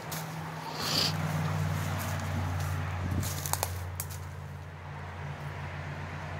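Footsteps crunching through dry leaf litter and brush while walking in woods, with a few sharp twig snaps about three and a half seconds in. A steady low hum runs underneath.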